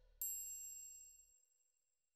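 A single bright, high chime from an intro logo sound effect. It strikes once and rings out, fading over about a second.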